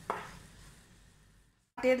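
A wooden spatula scrapes once against a nonstick pan while stirring cooked rice-flour dough, then fades to a faint stir. The sound cuts off suddenly, and a woman's voice begins near the end.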